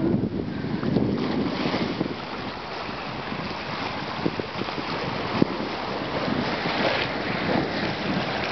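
Wind buffeting the microphone over small waves splashing against rocks and a stone quay wall, in gusty swells.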